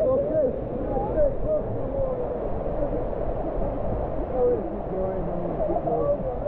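Steady rush of a river waterfall and fast stream water, with people's voices talking and calling over it.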